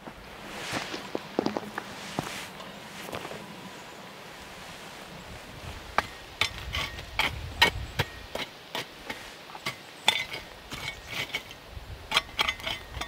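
Small shovel digging into a campfire's hot coals among the ring stones: a run of sharp scrapes, clinks and knocks, sparse at first and coming thick and fast from about halfway through.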